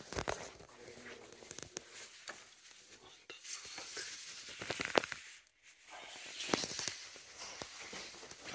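Irregular crunching and clicking steps and handling noise as someone walks over debris, with two short breaks in the sound.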